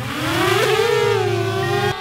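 A DJI Mavic quadcopter's motors and propellers spinning up: a whine that rises through the first second, then holds as a steady buzz over a low hum.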